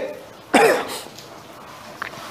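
A man's single short cough about half a second in, with low room tone after it.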